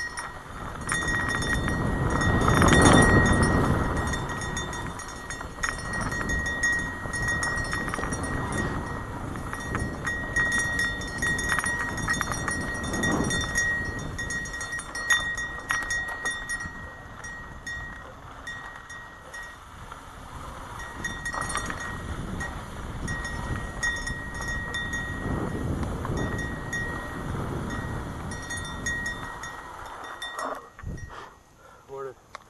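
Mountain bike riding fast down a dusty dirt trail, heard from a helmet camera: wind buffeting the microphone and tyres rolling and crunching over dirt and gravel, with scattered rattles and clicks from the bike. The rush is loudest a few seconds in, and a thin high whine comes and goes throughout.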